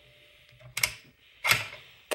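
Bolt of a homemade single-shot .218 Bee rifle being opened: two sharp metal clicks, under a second apart, as the handle is lifted and the bolt drawn back. The action cocks on opening.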